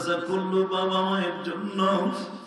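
A man's voice chanting a sermon in a slow sung melody into a microphone, with several long held notes. This is the melodic intoning style of a Bangla waz preacher.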